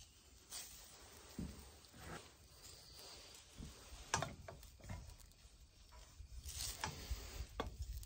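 Faint, scattered scrapes and light taps of a wooden spatula against a stainless steel skillet as it slides under a frying egg, over a faint steady hiss. The egg is coming loose from the pan without sticking.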